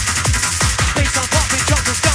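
Fast electronic rave music from a DJ's live set: pounding kick drums, each dropping in pitch, about three a second. A short stabbing synth riff comes in about a second in.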